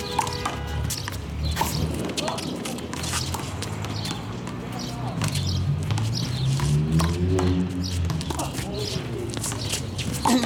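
One-wall handball rally: the rubber ball is slapped by hand and smacks off the concrete wall and the asphalt in sharp, irregular cracks, mixed with players' quick footsteps, over a steady low background rumble.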